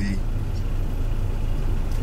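Steady low hum of a car's engine idling, heard from inside the cabin.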